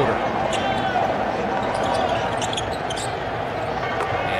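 Basketball arena crowd noise during live play, with a ball bouncing on the hardwood court and brief sneaker squeaks.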